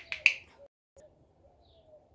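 Plastic flip-top cap of a lotion tube being snapped open: two sharp clicks in quick succession, the second one louder.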